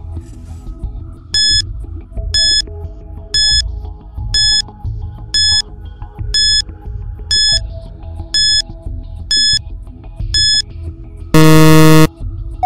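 Quiz countdown-timer sound effect: ten short high beeps, one a second, over a low background music bed, ending in a loud, longer buzzer as the timer reaches zero and time is up.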